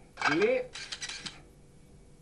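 A short voice sound rising in pitch, then about half a second of clinking and clattering of cutlery and dishes.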